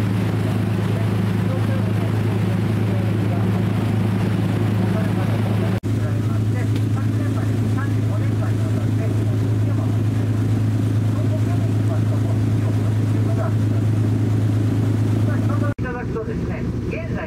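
A cruise boat's engine running steadily with a deep, even drone, heard on board, with faint voices under it. The sound breaks off for a moment about six seconds in and again just before the end.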